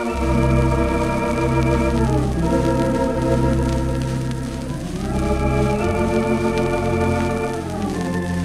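Wurlitzer theatre organ (the Empire Leicester Square four-manual, 20-rank instrument) playing sustained chords over a deep pedal bass, heard from a 1933 78 rpm record. The bass comes in at the start, and the chords shift about two seconds in and again about five seconds in.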